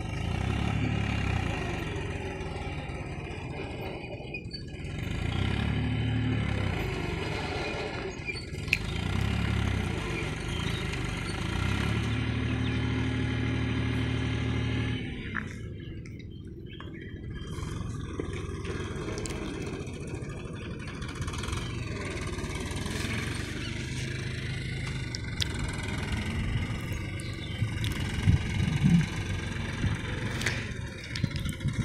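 Mahindra 275 tractor's diesel engine running, its note swelling and easing off several times, with a few sharp clicks near the end.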